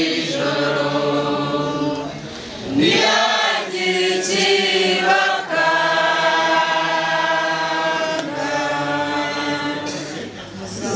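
A group of voices singing together into a microphone, holding long notes, with a short break about two and a half seconds in.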